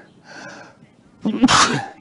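A person sneezing once, loudly, a little over a second in.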